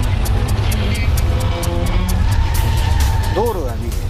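Dramatized earthquake sound effects: a deep, continuous rumble with rapid rattling and knocking, laid under dramatic music. Near the end a rising-then-falling wail-like tone sounds once.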